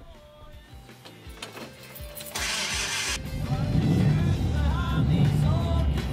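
An old car's engine being started: a moment of cranking, a short hiss about two and a half seconds in, then the engine catches and runs loudly for the rest of the time, under background music.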